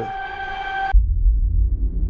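Trailer-music sound-design playback. A steady high ringing tone cuts off abruptly about a second in, and a loud, deep boom takes over, its low rumble carrying on with a hiss beginning to swell above it.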